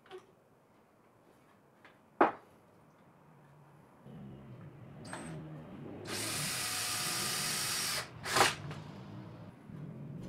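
A drill-driver spinning up and driving a screw through a steel corner bracket into timber, at its loudest for about two seconds. A sharp click comes before it and another just after.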